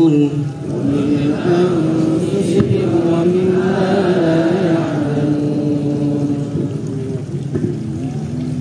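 A long held note of Quranic recitation cuts off at the very start, followed by a chanting voice holding a slow, wavering melodic line. A sharp click sounds about two and a half seconds in.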